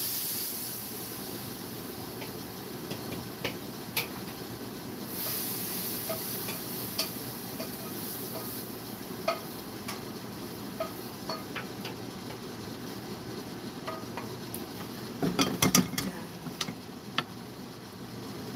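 Vegetables sizzling in a hot wok as a wooden spatula stirs and scrapes them, with scattered clicks of the spatula against the pan. Near the end there is a short burst of clatter from utensil and pan.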